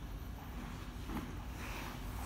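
Faint rustling and soft contact of two grapplers in cotton gis moving on foam mats, with a small soft knock about a second in, over a steady low room hum.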